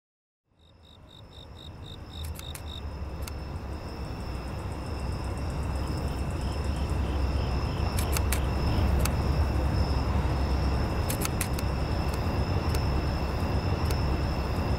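Outdoor night ambience fading in over the first few seconds: a low steady rumble of distant traffic under a high steady insect trill with short pulsing chirps, and scattered sharp clicks.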